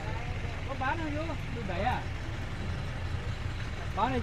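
Faint background voices of people talking, over a steady low rumble.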